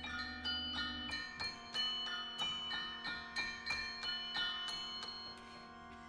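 Mallet percussion in a contemporary ensemble piece: a quick, even run of struck notes, about three a second, each ringing on under the next. The strokes stop about five seconds in, leaving the notes to ring; a low held note underneath fades out about a second in.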